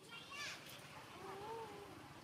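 Long-tailed macaque calls: a quick run of short high squeaks in the first half second, then a longer wavering coo near the end.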